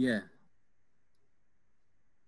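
A single spoken "yeah" at the start, then near silence: the faint room tone of an online video call.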